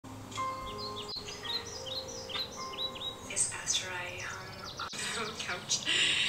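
Birds chirping: a run of short, quick calls that slide downward in pitch, repeated many times, over a few steady held tones.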